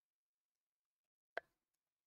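Near silence broken once, about one and a half seconds in, by a short plop as a drinking bottle comes away from the lips.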